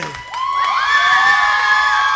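Arena crowd cheering, swelling about half a second in and holding steady.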